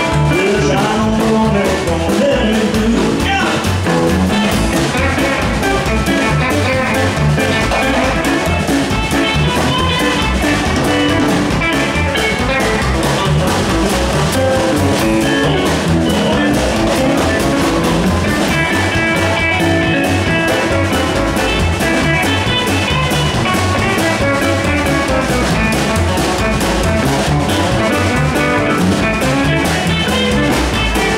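A live rockabilly band playing an uptempo number: electric lead guitar and strummed acoustic guitar over an upright bass and a drum kit, with a steady driving beat.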